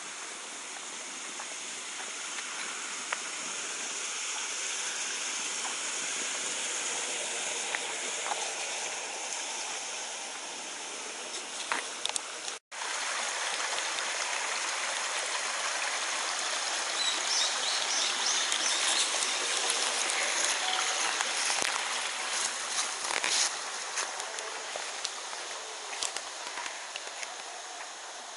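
A small stream running with a steady rushing sound, briefly cutting out near the middle and a little louder afterward.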